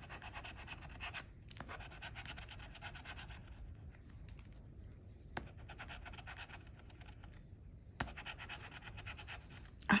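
A handheld scratcher tool scraping the coating off a paper scratch-off lottery ticket in quick repeated strokes, in several short bursts with brief pauses between them. Two sharp clicks come about halfway through and again near the end.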